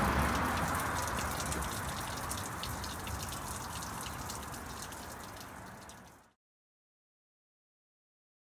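Water trickling and dripping in a leaf-filled curbside gutter by a storm drain, a patter of fine drips that fades steadily and cuts off to silence about six seconds in.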